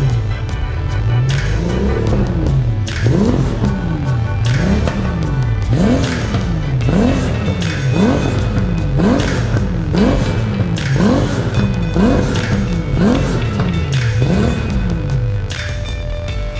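Car engine revved over and over in quick blips, about one a second, each rising sharply in pitch and falling back; it is taken to be a Porsche 964's air-cooled flat-six. Background music plays under it.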